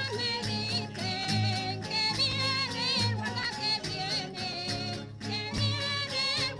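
Spanish folk dance song: singing voices with vibrato over instrumental accompaniment, with a recurring low beat and frequent short clicks.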